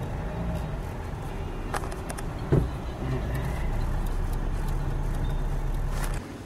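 Car engine running steadily, with a couple of sharp clicks about two seconds in.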